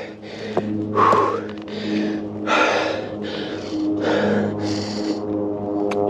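Background music with sustained notes, over a mountain biker's hard breathing, about one breath a second.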